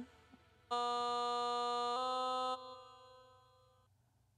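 A vocal note played back from the recording session, pitch-corrected to a dead-steady tone, holding for about two seconds with a small step up in pitch midway, then cut off into a fading reverb tail.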